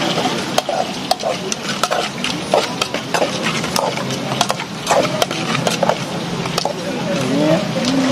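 Kitchen clatter: frequent short, sharp clinks of stainless steel bowls and utensils as fried frog legs are tossed and plated, over a steady background hiss.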